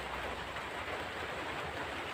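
Steady, even background noise with no distinct events: a faint hiss of room or recording noise.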